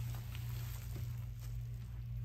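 Room tone dominated by a steady low hum, with a few faint light taps and rustles.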